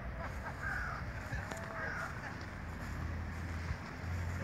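Two short, harsh bird calls, about a second and two seconds in, over a steady low outdoor rumble.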